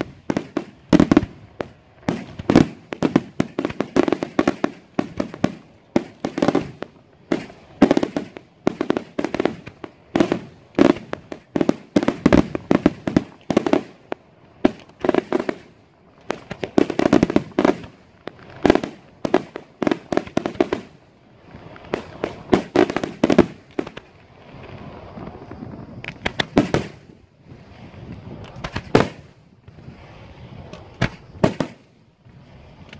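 Daytime aerial fireworks shells bursting in a rapid, irregular barrage of loud bangs and crackling reports, several a second, thinning out to fewer, spaced bangs over the last third.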